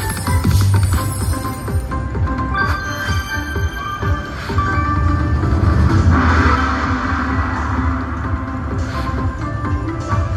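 Triple Coin Treasure video slot machine playing its free-spin bonus music: chiming mallet-like tones over a steady bass, with short clicks as the reels stop. About six seconds in, a bright shimmering swell plays as a symbol upgrade is awarded.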